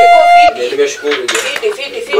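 A loud ringing tone with bright overtones, rising slightly in pitch, cuts off abruptly about half a second in. Softer background sound follows.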